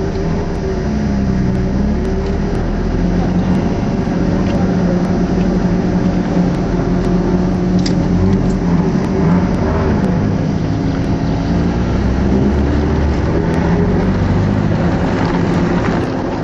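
Audi TT's engine heard from inside the cabin, running at low, fairly steady revs, its pitch rising and dipping slightly as the car drives.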